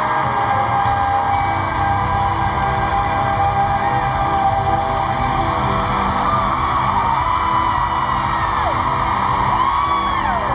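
Live pop band music filling an arena, with a crowd screaming and whooping over it. Near the end, high screams rise and fall in pitch.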